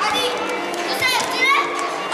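Children shouting and calling out during a youth indoor football game, high voices rising and falling, loudest just after the start and again about a second in, over steady crowd chatter.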